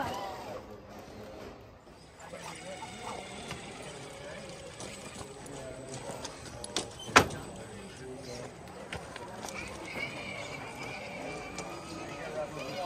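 Faint background voices of people talking, with one sharp knock about seven seconds in and a few lighter ticks.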